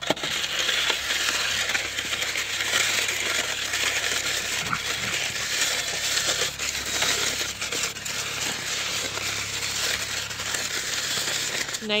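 Snow shovel blade pushed steadily across a thin layer of snow, a continuous scraping crunch without a break.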